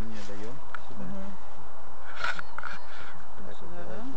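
Low, indistinct speech in short phrases, over a steady low rumble of background noise.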